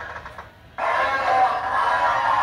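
Spirit Halloween Zombie Bait animatronic playing a recorded vocal sound through its built-in speaker. A long, sustained sound starts suddenly about a second in, after a short lull.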